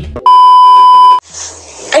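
A single loud, steady electronic bleep tone, about a second long, starting abruptly and cutting off just as abruptly: a censor-style bleep.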